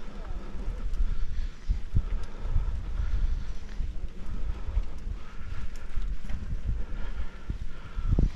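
Wind buffeting the microphone over the rumble of a mountain bike rolling on a rough dirt road, with frequent small knocks and rattles as it goes over bumps.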